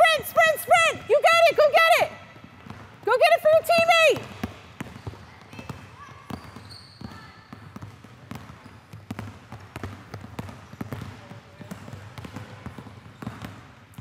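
Several basketballs being dribbled on a hardwood gym floor: a scatter of irregular bounces from more than one ball. A high-pitched shouting voice is louder than the bounces in the first two seconds and again briefly around the fourth second.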